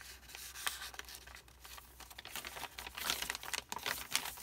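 Paper rustling and crinkling as the coffee-dyed pages and paper pieces of a handmade journal are handled and turned, with small ticks and scrapes. It is busiest near the end, as a page is flipped over.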